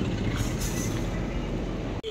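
Steady outdoor street noise: an even low rumble of road traffic with no single event standing out. It cuts off abruptly at the end.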